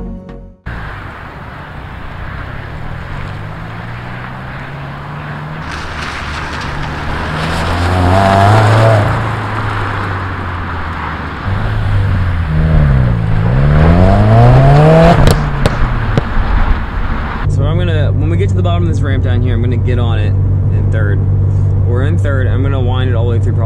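Subaru WRX's turbocharged flat-four engine revving and accelerating, its pitch climbing and falling several times, with two quick up-and-down sweeps about two-thirds of the way through. Near the end it changes to a steadier engine drone heard from inside the cabin while driving.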